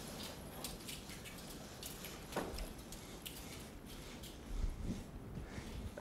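Quiet room tone with faint scattered clicks and small rustles, and a soft low thump about four and a half seconds in.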